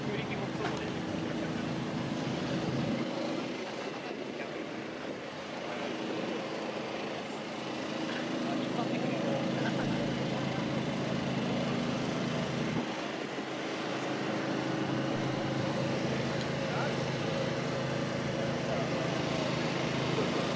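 A steady low mechanical hum, like an idling engine, with indistinct voices in the background.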